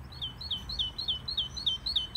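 Recorded birdsong played from a sensor-triggered garden loudspeaker: a bird repeating one short, high, falling note about three to four times a second in an even series.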